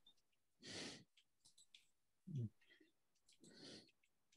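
Near silence with a person breathing out twice into a microphone, once about a second in and again near the end, and a short low vocal sound in between.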